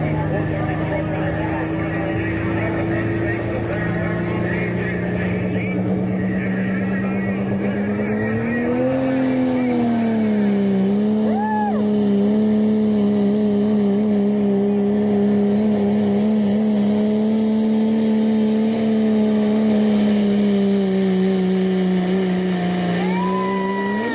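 Cummins turbo-diesel in a Dodge Ram pickup pulling a sled at full throttle under heavy load. It holds high, nearly steady revs, stepping up about four seconds in and swelling then sagging briefly between about nine and eleven seconds before settling again.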